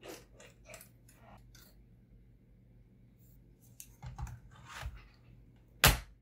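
Lenovo ThinkPad T440p laptop being reassembled by hand: scattered light plastic clicks and knocks, then a sharp, loud click near the end as the rear battery is pressed into place.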